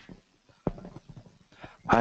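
A single sharp thump about two-thirds of a second in, followed by a few light knocks and clicks, as of handling at a lectern; a man starts speaking right at the end.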